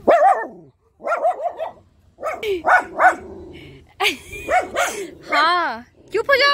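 Dog barking repeatedly in short clusters, with a longer, wavering bark near the end.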